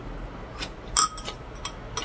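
Metal chopsticks clinking against a ceramic bowl: one clear ringing clink about a second in, with a few lighter taps around it.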